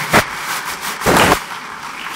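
Audience applauding in a large hall, with a sharp crack about a quarter of a second in and a short, louder noisy burst about a second in.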